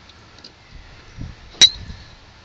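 Golf driver striking a teed ball: one sharp metallic click with a brief ring, about one and a half seconds in. The strike is a little under the ball.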